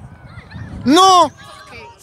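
A single loud, short shout close to the microphone, its pitch rising and then falling, about a second in.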